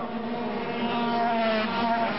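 Several 125cc single-cylinder two-stroke racing motorcycles running hard together, their engine notes overlapping and falling slightly in pitch in the second half.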